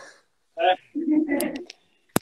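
A person's voice: after a moment of silence, two short wordless murmured sounds, the second held for about half a second.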